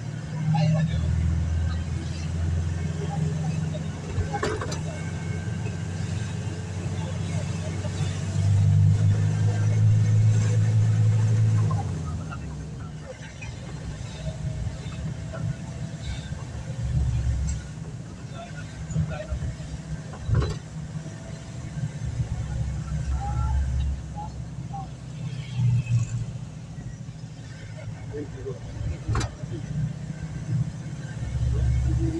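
Engine and road noise inside a moving passenger van's cabin: a steady low rumble that grows louder for a few seconds in the first half, with a few sharp knocks.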